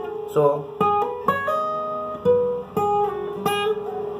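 Acoustic guitar played as a slow single-note lead phrase high on the neck: about eight notes, each ringing on, with some notes sounded by hammer-ons and pull-offs rather than fresh picks.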